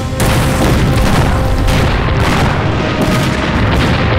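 Film battle sound effects of a shelling: a blast right at the start, then a continuous heavy rumble of explosions, loud throughout.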